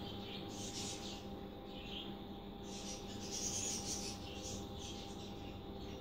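Steady low hum of a running desktop computer, its cooling fans giving a few fixed tones, with faint rustles now and then.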